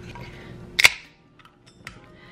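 Aluminium seltzer can's pull tab snapping open: one sharp crack with a brief hiss of escaping carbonation, followed by a couple of faint clicks near the end.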